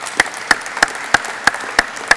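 Audience applauding. One person's loud, evenly spaced claps stand out close by, about three a second, over the general clapping.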